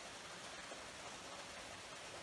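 Steady faint background hiss with no distinct event: room tone.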